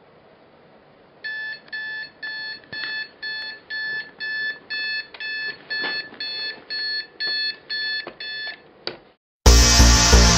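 Digital alarm clock beeping, a pitched beep about twice a second starting about a second in, with about fifteen beeps. A click follows just after the last beep, and loud electronic music with a steady beat starts near the end.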